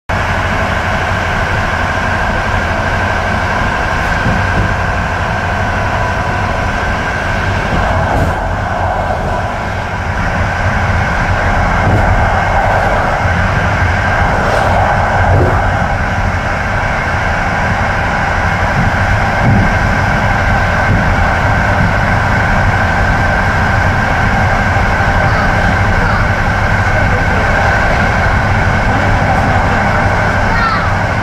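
Train running steadily along the track, heard from inside the front cab: a continuous rumble with a steady high hum over it and a few faint clicks from the wheels.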